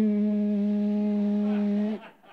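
A man's voice holding one steady, flat buzzing hum for about two seconds, cut off sharply at the end, in imitation of a hair dryer running.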